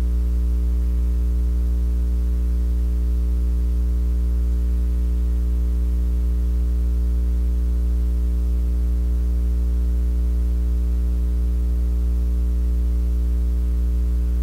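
Loud, steady low electrical mains hum with a stack of evenly spaced overtones, unchanging throughout.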